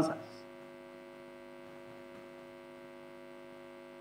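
Faint, steady electrical hum: several fixed low tones held level over a light hiss, with nothing else sounding.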